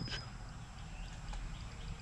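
Quiet outdoor background: a low steady rumble with a few faint, short high chirps.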